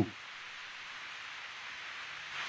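A steady, low hiss with no other sound in it, lying mostly in the upper range.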